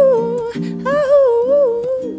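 A woman sings a wordless, wavering melody over softly strummed ukulele chords, in two phrases, the second starting about a second in.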